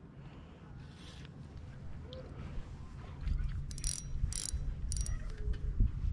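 Lew's spinning reel being worked against a hooked bass, its mechanism giving short clicking ticks, mostly in the second half, over a low steady rumble.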